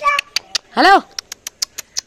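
A high voice calls "hello" once, followed by a quick run of sharp clicks, about seven in a second.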